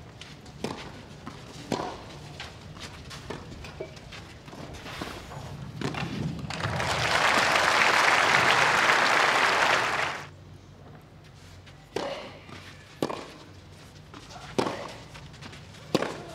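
Tennis balls struck by rackets during rallies on a clay court: single sharp pops about a second or more apart. Midway, a crowd applauds for about three seconds, then a new rally starts with further racket hits.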